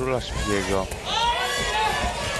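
Loud, high-pitched shouts from ringside: men in a boxer's corner calling instructions to him during the round, over a background crowd murmur.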